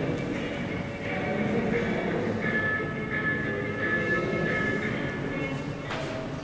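Soundtrack of a gallery video installation: a dense, steady rumbling noise with several held high tones over it from about halfway in.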